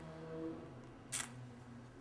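A short, sharp click about a second in, then a sudden loud bang right at the end, the start of a gunshot.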